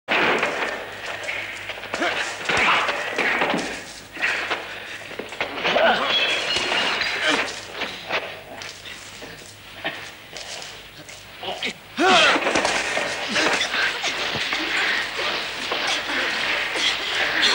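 Fight scene soundtrack from an old film: wordless shouts and grunts over a run of thuds, knocks and crashes, with a loud cry about twelve seconds in.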